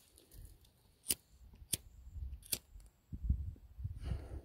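Three sharp clicks, spaced a little under a second apart, with low rumbling from the phone's microphone being handled and buffeted while walking.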